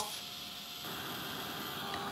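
Embossing heat gun running, a steady fan whir and hiss as it blows hot air onto embossing powder, turning slightly louder with a faint hum a little under a second in.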